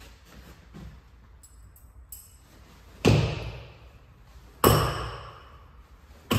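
Two thrown shuriken striking the target about a second and a half apart. Each hit is a sharp thud with a ringing tail that fades over about a second.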